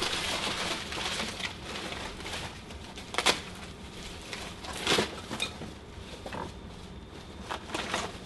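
Packing material rustling and crinkling as hands dig through a cardboard box, with a few sharper crackles about three, five and nearly eight seconds in.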